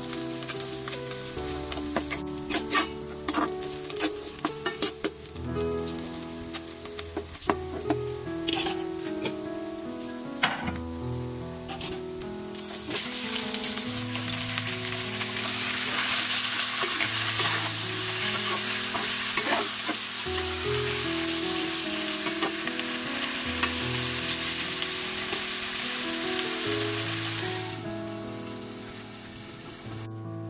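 Sliced onion, garlic and ginger sizzling in oil in a stainless wok, with a metal ladle clinking and scraping against the pan. About twelve seconds in, raw chicken pieces go in and a louder, steady sizzle takes over, fading near the end.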